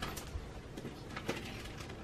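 A few light clicks and knocks of small toys being handled and set down inside a dollhouse, about five separate taps spread over two seconds.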